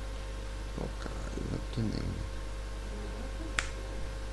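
A steady electrical hum with a few quiet spoken words, then one sharp click about three and a half seconds in.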